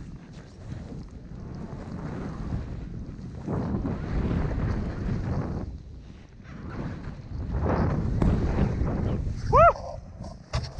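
Snowboard riding through deep powder snow: the board rushes through the snow in surges as the rider turns, with wind buffeting the body-worn camera's microphone. Near the end, a short whoop from the rider.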